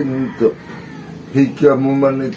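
A man's voice chanting an incantation in long, drawn-out held notes, with a short pause about halfway through.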